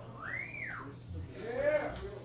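A single human whistle that glides up in pitch and back down, followed about a second later by a brief vocal shout.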